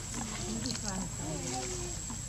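Macaques calling: a string of short gliding coos and squeaks, one sweeping upward about a second in, over a steady high-pitched whine.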